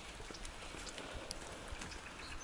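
Light rain falling, a faint even hiss with a few scattered light ticks, including faint footsteps on wet brick paving.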